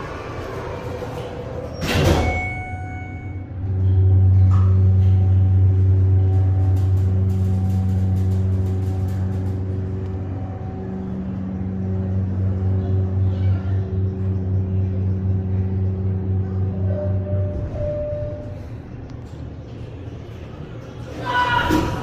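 Schindler hydraulic elevator: the doors close with a knock about two seconds in. The hydraulic pump motor then hums steadily while the car rises, and the hum cuts off after about fourteen seconds when the car stops.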